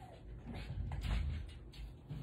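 Faint rustling and soft knocks of a person leaning down beside a chair and reaching for a dropped item, with clothing and body movement noise.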